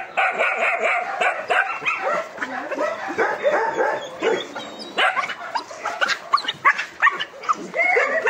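Several puppies and young dogs yipping and whining in many short, overlapping calls, with a few barks mixed in.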